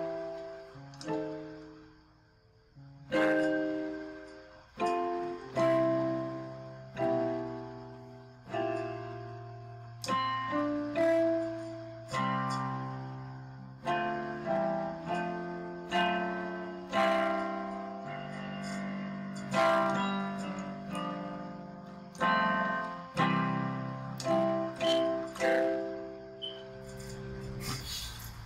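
Digital keyboard with a piano sound playing a slow gospel song in C major: melody and chords in the right hand over bass notes in the left, struck about once a second and left to ring.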